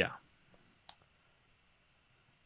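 A single sharp computer mouse click about a second in.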